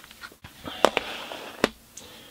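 Plastic CD jewel cases being picked up and set down on a table: a few sharp plastic clacks, the loudest just under a second in and another near the end, with a short scuffing sound between them.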